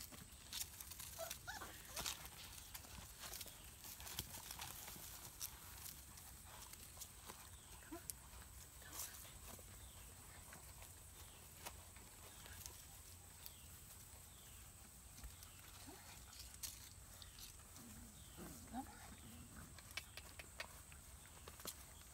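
Faint sounds of beagle puppies at play: scattered light taps and clicks of small feet, and a few brief, soft puppy vocal sounds, mostly near the end, over a steady faint high-pitched hum.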